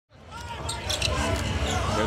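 Basketball game sound fading in from silence: a ball bouncing on the hardwood court over arena crowd noise, with a few sharp clicks.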